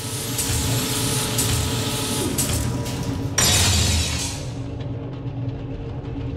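Produced sci-fi intro sound design: a low mechanical drone with steady held tones and a few sharp metallic hits. A loud whoosh swells up about three and a half seconds in and fades back into the drone.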